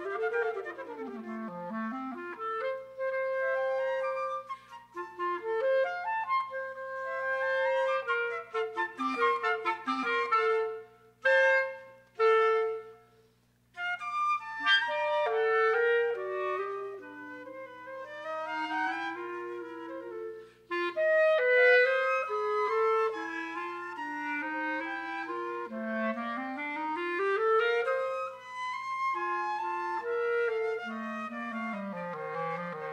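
Flute and clarinet duet, two melodic lines weaving around each other in fast runs. Near the middle the music stops for about a second after two short chords, then resumes, with a rising run in the lower voice near the end.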